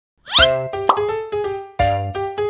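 Light children's background music starting up: a short rising sweep like a pop sound effect, then a bouncy run of keyboard notes, with a fresh chord near the end.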